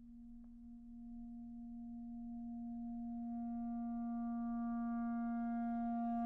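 Solo clarinet holding one low note, entering from almost nothing and swelling slowly and steadily louder.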